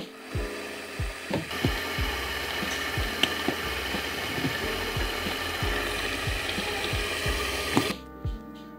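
Background music with a thumping beat, under a steady rushing hiss that sets in about a second and a half in and lasts to the end.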